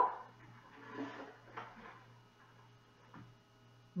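Quiet room with a steady low hum, and faint rustling with a couple of light taps as a small plush toy is taken out of a soft fabric pouch.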